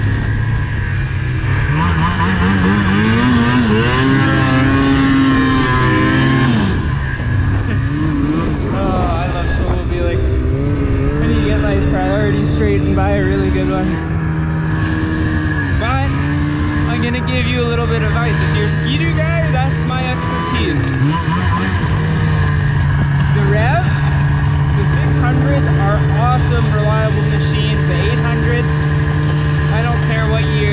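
A 2005 snowmobile's engine running under way, its pitch rising and falling as the throttle is opened and eased in the first few seconds, then holding steady through the last several seconds.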